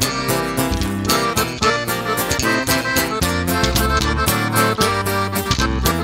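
Norteño band playing an instrumental corrido passage, an accordion carrying the melody over deep bass and a steady, regular beat.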